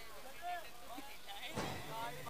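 Faint chatter of spectators' voices, with a brief louder outburst about one and a half seconds in.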